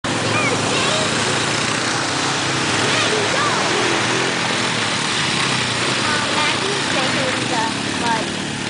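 ATV engine running steadily as the quad is ridden through mud. Short voices call out over it.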